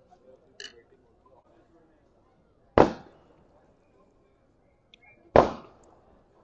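Two sudden, loud knocks about two and a half seconds apart, each dying away quickly, with only a faint background and a small click between them.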